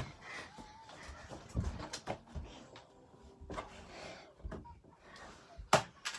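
Scattered thuds and knocks of a child scrambling over furniture and climbing a bedroom wall, with a sharp knock shortly before the end.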